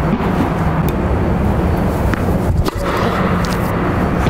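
Steady low hum and rushing noise of the ventilation and inflation blower in an air-supported indoor tennis dome, with a few light knocks, the clearest a little past halfway.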